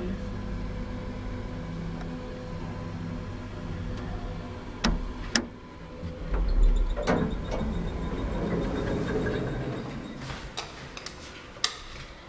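Old Teev traction elevator running with a steady hum as it arrives and stops, with two sharp mechanical clicks about five seconds in and a quick series of clicks near the end.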